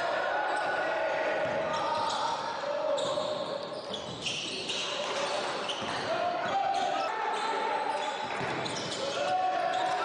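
Sounds of a basketball game on a hardwood gym court: sneakers squeaking in many short, high squeaks, the ball bouncing, and indistinct voices of players and spectators in the gym.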